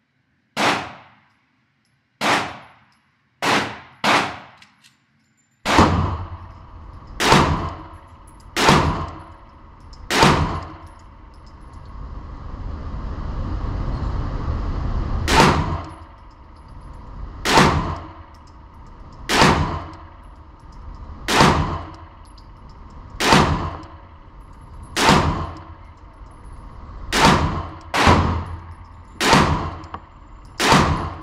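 Canik TP9 Elite Combat Executive 9mm pistol firing 115-grain full metal jacket rounds, a string of single shots roughly one every one to two seconds, with a longer pause near the middle. Each shot rings off the walls of an indoor range, and a rushing hiss swells up between shots in the middle.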